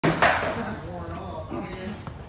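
Two sharp knocks of sparring blows landing on armour or shield, about a fifth of a second apart, the second louder with a short ringing tail, followed by faint voices.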